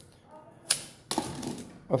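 A folding rule being folded up by hand, its segments clicking: one sharp click a little under a second in, then a short clatter just after a second.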